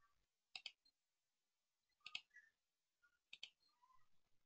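Faint computer mouse clicks: three quick pairs of clicks, spaced about a second and a half apart.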